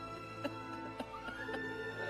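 Slow dramatic background music of sustained, held tones, with a woman's soft sobbing and a few faint clicks.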